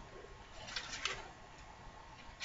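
Faint rustling of paperback pages being turned by hand, with a few soft paper crackles about a second in.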